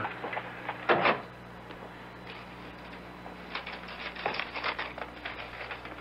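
Radio-drama handling sound effects: a short knock about a second in, then a run of faint rustles and light clicks, as of paper being handled.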